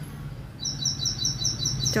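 A small bird chirping in the background. It gives a rapid, regular run of high two-note chirps, about five a second, starting about half a second in, over a low steady hum.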